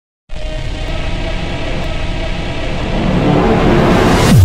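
Music intro build-up: a dense rumbling swell that starts a moment in and grows louder toward the end, leading into a drop.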